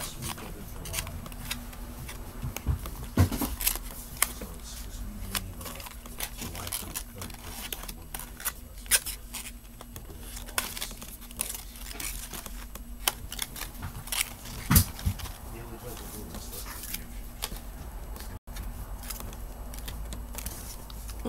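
Small objects being handled close to the microphone: scattered clicks and knocks, a few louder ones, over a steady low hum.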